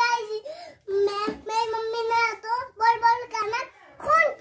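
A young child singing or chanting in a high voice, in several short phrases held on a nearly steady pitch.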